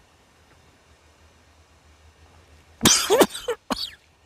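A man coughing and spluttering twice in quick succession near the end, the first burst the longer and louder, as a shot of strong alcoholic hawthorn tincture goes down his throat.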